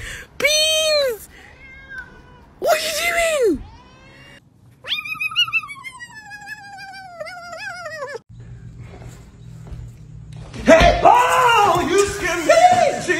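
Cats meowing: two short, arching yowls in the first few seconds, then a kitten's long, wavering meow that falls in pitch and lasts about three seconds.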